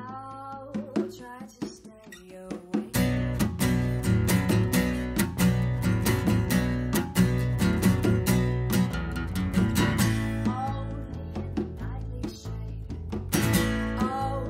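A song performed live: a woman singing over strummed acoustic guitars. The playing becomes fuller and louder about three seconds in, with sung lines at the start and again near the end.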